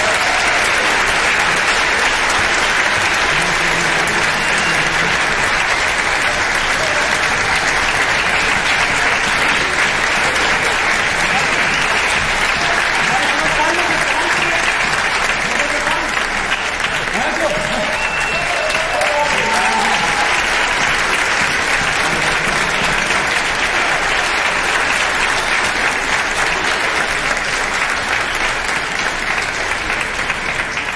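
Concert-hall audience applauding steadily after the orchestra finishes a piece: a dense, even clapping that holds at the same level throughout.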